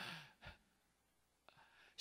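A man's breath close to a microphone: a brief sigh-like exhale at the start, then near silence with a faint breath just before he speaks again.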